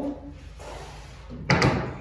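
Two quick sharp knocks about one and a half seconds in: hand tools being set down on a plywood baseboard top.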